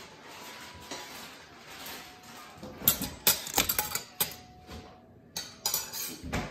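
Metal cutlery clinking against a ceramic plate: a quick run of sharp clinks about three seconds in and a few more near the end, as a fork is set down on the plate.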